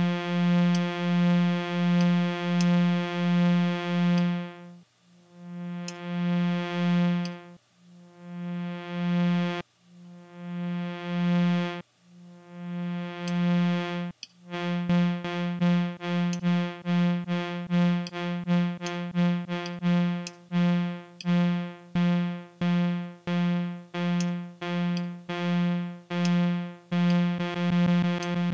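Lyrebird Reaktor Blocks synthesizer sounding one steady pitch over and over, triggered by its own one-shot envelope. The note pulses evenly about twice a second at first, swells more slowly with gaps in the middle, then repeats in quicker, shorter pulses as the envelope knobs are turned.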